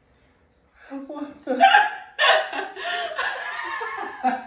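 A woman laughing hard in gasping, hiccuping bursts that start about a second in and carry on without a break.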